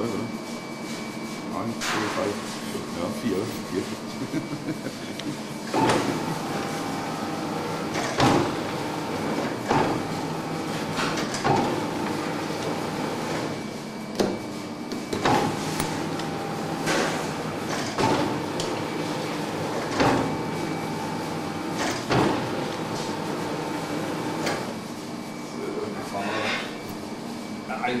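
Electric dough sheeter running, its conveyor belts carrying a block of laminated puff pastry back and forth through the rollers, with a knock each time the direction is reversed, about every one and a half to two seconds. The motor starts about six seconds in and stops a few seconds before the end.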